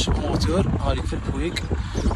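A man talking, over a steady low rumble.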